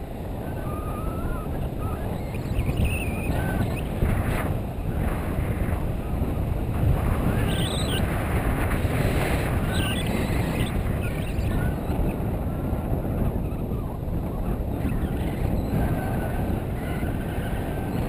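Wind from a paraglider's forward flight buffeting the camera microphone: a steady, loud low rumble of rushing air.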